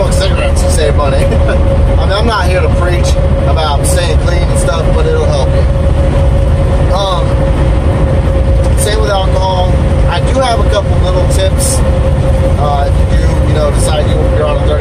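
Inside a semi-truck's cab at highway speed: a steady, loud low drone of engine and road noise with a constant whine over it.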